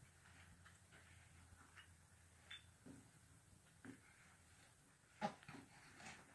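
Mostly quiet, with a few faint short vocal sounds from a baby bouncing in a doorway jumper, and one louder, sharp short sound about five seconds in.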